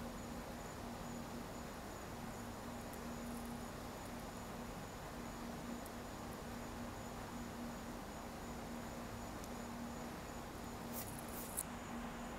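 A coin scraping the coating off a scratch-off lottery ticket: a steady soft rasp, with a brief sharper scrape near the end. A steady low hum sits underneath.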